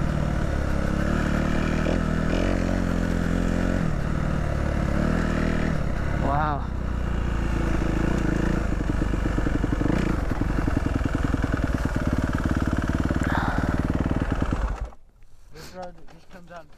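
Dirt bike engine running while riding a rough track, its pitch rising and falling with the throttle, turning to a rapid pulsing beat in the later part. It cuts off abruptly about a second before the end.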